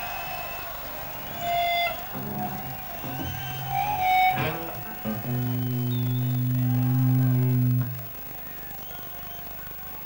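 Amplified electric guitar and bass notes played loosely between songs: a few scattered short notes, then one low note held for about two and a half seconds that cuts off abruptly, leaving only quiet stage hum near the end.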